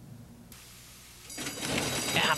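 Low hum and tape hiss at a cut between studio and race footage, then the track sound of a horse-race broadcast rising about a second and a half in, as the field stands in the starting gate just before the break.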